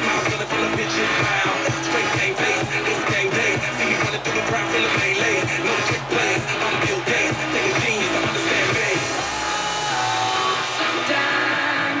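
Pop song playing on an FM radio broadcast, with a steady beat and singing; the bass and beat drop away about ten seconds in.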